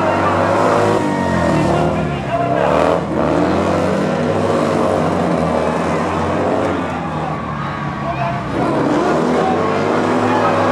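Engines of speedway sidecar racing outfits running hard around a dirt oval, their pitch falling and rising again as the riders shut off and get back on the throttle.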